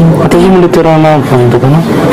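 Speech: a single voice talking on without a pause, as in a radio news reading.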